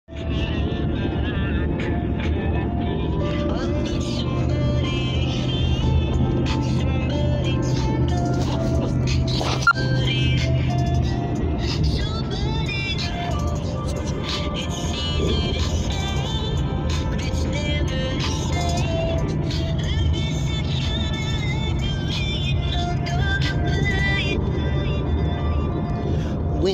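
Background music: an instrumental hip-hop beat with a steady low bass under a melodic line, and one sharp click about ten seconds in.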